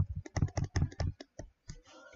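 Stylus tapping and clicking on a tablet as words are handwritten, a quick irregular run of sharp ticks that thins out about one and a half seconds in.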